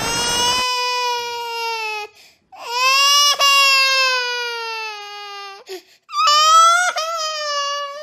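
Comedic crying sound effect: three long, drawn-out wails, each held and sliding slightly down in pitch, with short breaks between them. A burst of noise carried over from before cuts off about half a second in, under the first wail.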